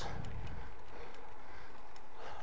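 Steady wind and tyre noise from a road bike being ridden, picked up by a bike-mounted camera microphone, with a few faint clicks.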